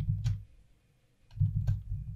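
Computer mouse and keyboard clicks picked up by the desk microphone: a few sharp clicks in two clusters, one at the start and one about a second and a half in, each with a low dull bump.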